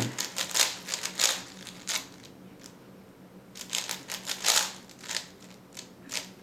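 3x3 Rubik's cube layers being turned fast through an algorithm: rapid runs of plastic clicks and clacks. They come in two bursts, the second starting about three and a half seconds in.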